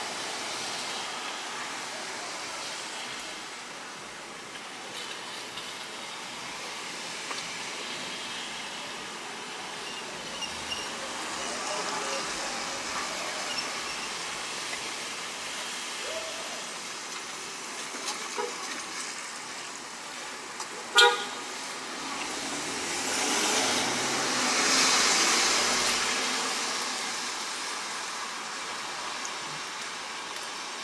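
Rain falling on the roof and windows of a car, heard from inside the cabin as a steady hiss. About two-thirds of the way through comes one short, sharp, loud sound, then the hiss swells up and dies back over a few seconds.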